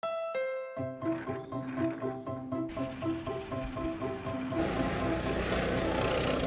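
Background music with held tones and a repeating, stepping melody. A rush of noise swells in about two-thirds of the way through.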